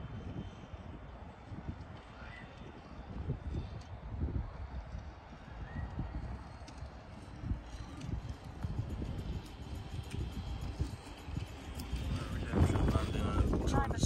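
Heavy wind buffeting the microphone in irregular low gusts, getting louder near the end.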